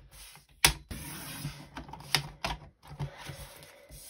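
Sliding-blade paper trimmer in use on card strips: a few sharp plastic clicks from the cutting rail and blade carriage, the loudest just over half a second in, with a soft scrape of the blade and paper between them.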